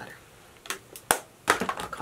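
A few sharp clicks from cosmetics being handled, with one loud, crisp click about a second in; a makeup palette is being lowered and put away. A breath and the start of speech follow near the end.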